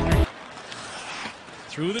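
Intro music cuts off abruptly just after the start. Then comes the low, noisy ambience of an ice hockey game broadcast: the arena crowd and the scrape of skate blades on the ice.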